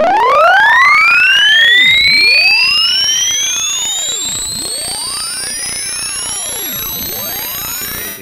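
Computer-generated sine-wave sweep, a pure electronic tone stepping up in frequency from about 100 Hz toward 8 kHz, played back loud. It is a rising whine that climbs fast at first and then more slowly, with fainter tones arching up and down beneath it, and it cuts off suddenly at the end.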